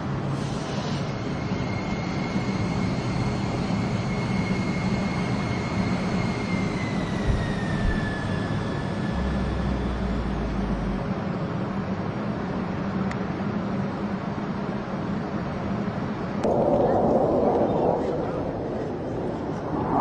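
A steady engine-like drone with a high whine that holds, then slides down in pitch about seven to eight seconds in. A louder surge of noise comes in briefly about sixteen seconds in.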